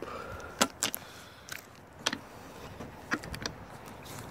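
A handful of separate sharp clicks and light knocks from a gloved hand working the catch on a Mercury 50 hp four-stroke outboard's top cowling as the cover is released.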